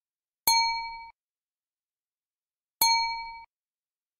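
Computer alert chime played twice, the same short bright ding each time, about two and a half seconds apart, each fading away within a second.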